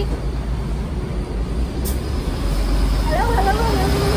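City bus engine running with a steady low rumble that grows stronger about halfway through, with women's voices over it.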